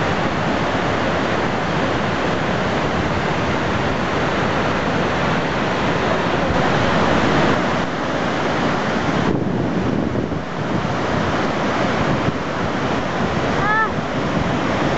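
Water of the Marmore Falls crashing down: a loud, steady rush of falling water.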